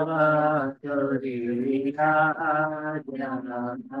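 A man chanting a scripture verse in a slow, melodic recitation, holding long notes with brief breaks between phrases.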